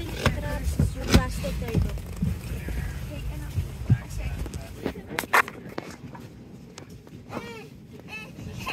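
Passengers' voices in an airliner cabin over a low cabin rumble, with several sharp knocks and clicks. The rumble drops away about five seconds in.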